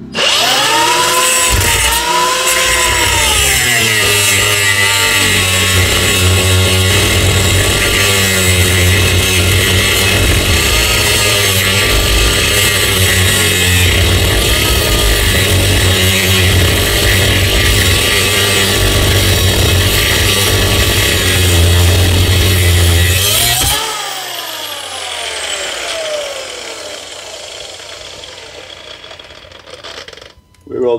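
Milwaukee M18 Fuel brushless cordless angle grinder with a cut-off wheel, cutting through a steel brake push rod. It runs loud and steady under load for about 24 seconds, its whine dipping and wavering as the wheel bites into the steel. Then the grinder is released and spins down with a falling whine.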